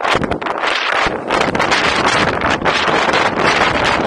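Wind buffeting the microphone of a car-roof-mounted 360 camera while the car drives, a loud, uneven rushing noise with gusts.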